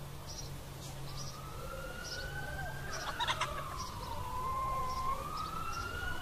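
Distant emergency-vehicle siren in a slow wail, its pitch rising, falling about four seconds in, then rising again. Faint short high chirps repeat about twice a second underneath.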